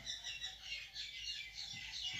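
Felt-tip marker squeaking as it writes on a whiteboard: a run of short, faint, high squeaks as the letters are drawn.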